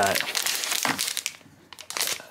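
Plastic packaging pouch crinkling and rustling as a phone case is pulled out of it, dying away about a second and a half in.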